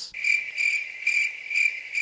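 Crickets chirping in an even, pulsing rhythm of about two chirps a second, starting just after the start.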